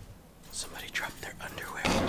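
Faint whispering close to the microphone, a string of short breathy sounds after a quiet first half-second.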